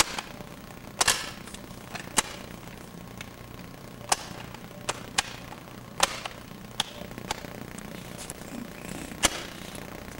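A steady low hum and hiss, broken by about eight sharp clicks at irregular intervals.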